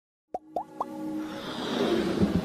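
Animated-intro sound effects: three quick pops, each gliding upward and each higher than the last, starting about a third of a second in, then a music swell that keeps building.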